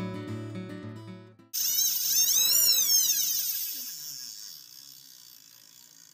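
Acoustic guitar music fades out about a second and a half in. A sudden high whirring then starts, its pitch sweeping up and down, like a fishing reel's drag spinning as line runs off, and it fades away over the next few seconds.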